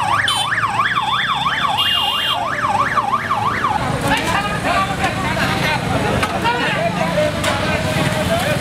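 A siren wailing rapidly up and down, about three sweeps a second, for the first four seconds, with a short high beep about two seconds in. After it stops, voices and motorcycle traffic fill the street.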